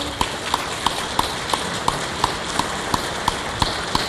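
A steady rhythm of short, sharp knocks, about three a second, stopping just before the end.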